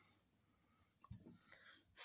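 Near silence: room tone, with a few faint short clicks about a second in.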